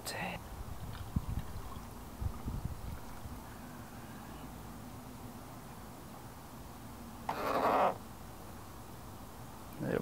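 Wort running from a fermenting bucket's plastic spigot into a plastic hydrometer test jar, a faint steady trickle. A few soft low knocks come in the first few seconds, and a brief louder burst of noise about seven seconds in.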